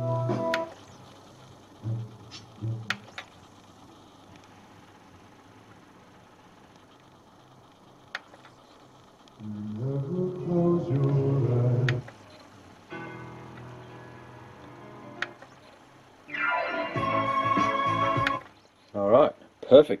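Songs from a home-burnt CD played by a Technics SL-PG300 CD player through a small stereo's speakers. The music comes in short snatches with quiet gaps and sharp clicks between them as the player is skipped from track to track. The repaired player is reading and playing the disc properly.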